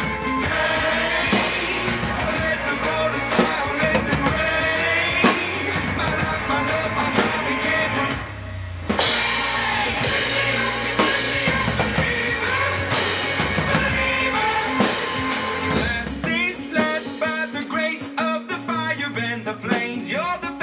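Acoustic drum kit played live along with a pop-rock song recording that has singing. The music drops out briefly about eight seconds in, and the deep bass falls away near the end, leaving voice and drums.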